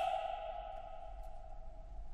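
A woman's sung note ends and its tone dies away in the concert hall's reverberation over about a second and a half, leaving a faint low hum.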